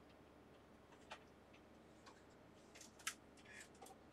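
Near silence, with a few faint, short clicks from a handheld multimeter and its probe leads being handled and set down.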